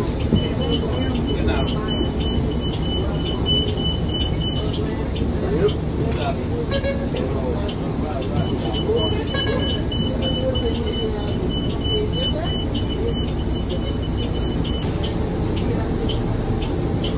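A steady high warning tone sounds twice from a New Flyer XDE40 diesel-electric hybrid bus stopped with its front door open, once for about four seconds and again for about six, over the bus's steady low running rumble. Voices are heard faintly.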